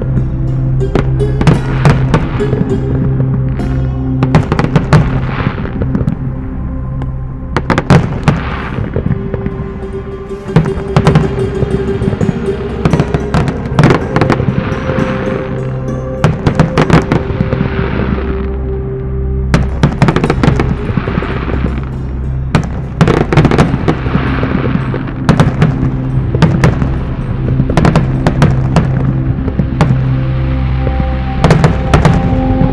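Aerial fireworks bursting in an irregular string of sharp bangs, with stretches of crackling, over background music with sustained tones.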